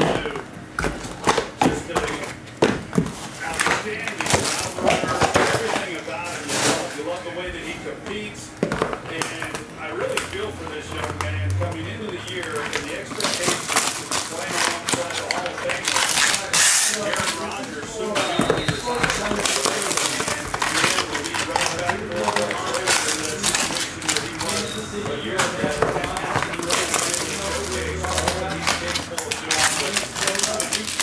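Cardboard card box being opened and foil trading-card packs handled and torn, a run of crinkles, rips and taps, with talk and music in the background.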